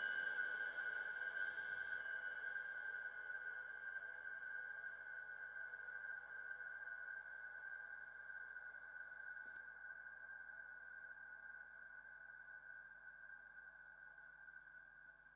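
Electric guitar drone through effects pedals: a single held high tone fading slowly away as the set ends, its upper overtones dropping out in the first couple of seconds. A faint click about nine and a half seconds in.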